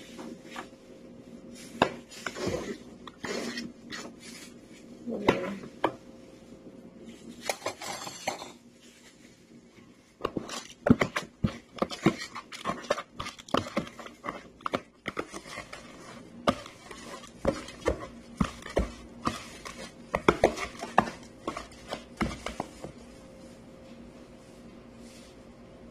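A metal ladle knocking and scraping against a plastic tub as a rice mixture is scooped and stirred, in a few scattered strokes at first and then a quick run of clicks and knocks, several a second, through most of the second half.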